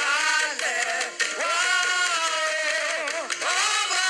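Gospel worship singing over music: a voice holds long notes that slide up and down in pitch.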